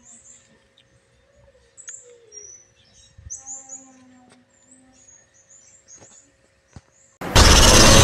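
Faint small birds chirping in the background with short, high chirps. A little after seven seconds in, a loud logo sound effect with a deep boom and music starts suddenly.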